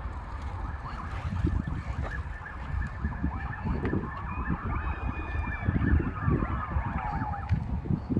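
Emergency vehicle siren wailing, its pitch sliding slowly up and down and echoing, then dying away near the end. Low wind rumble on the microphone underneath.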